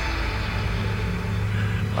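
A low, steady rumble, with the held notes of a sombre music score fading out about half a second in.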